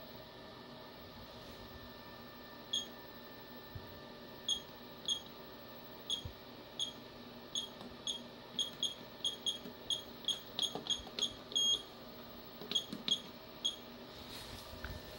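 Front-panel button beeps of a Pentax EPK-700 endoscope video processor: about twenty short, high-pitched beeps, one for each press of its panel buttons as the brightness setting is stepped. The beeps come faster in the middle, with one longer beep near the end. A steady electrical hum runs underneath.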